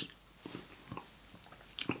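A short pause in a man's speech, holding only a few faint mouth clicks and lip noises, the last just before he speaks again.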